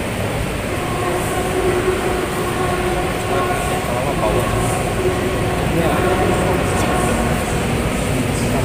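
Mixed youth choir singing long held chords that shift slowly, over a heavy low rumble from the large hall.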